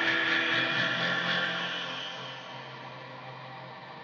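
Live noise music: a dense, loud wash of distorted electric guitar and effects-pedal noise. It fades down through the second half, leaving a steady low drone.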